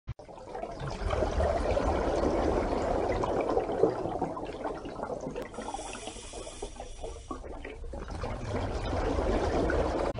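Running water, a steady watery rush that builds about a second in, eases off in the middle and swells again near the end.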